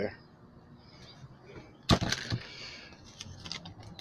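A sharp click about halfway through, then about a second and a half of soft rustling with small ticks, from plastic bags of small parts being handled and set down.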